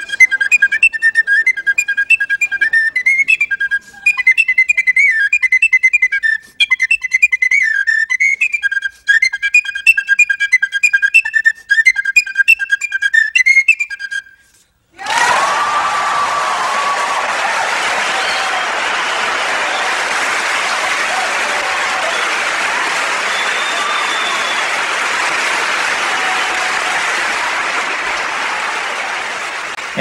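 Tin whistle playing a quick, ornamented melody in short phrases, ending on a held note about fourteen seconds in. After a brief silence an audience applauds, with a few whistles, steadily to the end.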